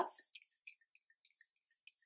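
A Watermelon Glow facial mist bottle spritzed rapidly at the face, about four soft hissing sprays a second from its fine-mist pump.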